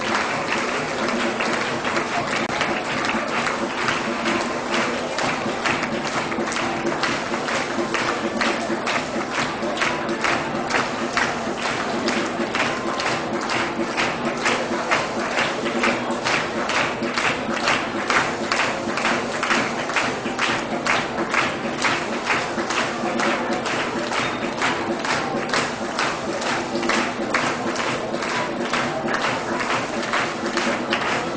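Music plays over a hall audience's clapping. From about a quarter of the way in, the clapping falls into a steady rhythm of about two claps a second, clapping along to the music.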